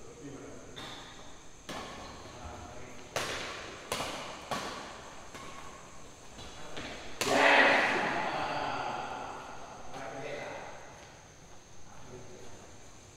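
Badminton rackets striking a shuttlecock in a fast doubles rally: a series of sharp cracks at uneven intervals, echoing in a large hall. About seven seconds in comes the loudest hit, followed by raised voices.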